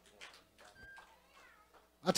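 Near silence: the room tone of a hall, with a few faint high-pitched squeaks a little before the middle.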